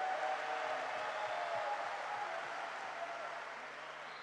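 Arena crowd applauding and cheering, dying away gradually over a few seconds.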